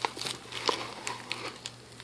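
Small plastic zip-lock bag being fingered and pried open, giving a scatter of short crinkles and clicks.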